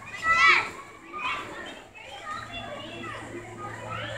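A child's high-pitched squeal about half a second in, then quieter children's voices chattering.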